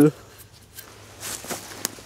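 A spoken word ends at the very start, followed by faint handling noises: a short rustle about halfway through and a sharp little click near the end, as hands work the cord and sticks of a lashed wooden vise.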